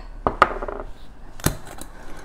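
Small dishes set down on a countertop: a few short clinks and knocks, the sharpest about a second and a half in.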